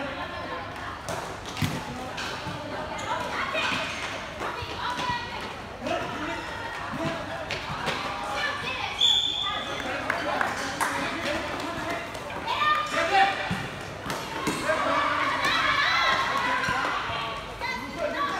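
Futsal game in play: the ball thudding off players' feet and the hard court, with players calling out to each other.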